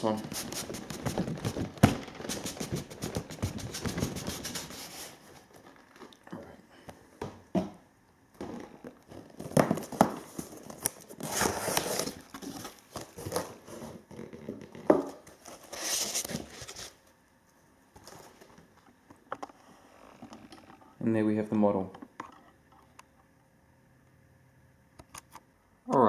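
Cardboard model box being unpacked: a long scraping as a tight inner tray is worked out of the box. Then come scattered crinkles and rustles of the packaging being opened.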